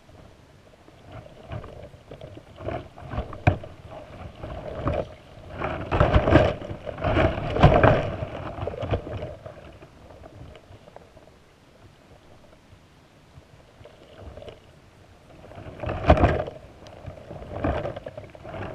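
Muffled underwater rushing of moving water around a submerged camera, with scattered knocks and clicks. It swells into loud surges about six to eight seconds in and again near the end, and is quieter in between.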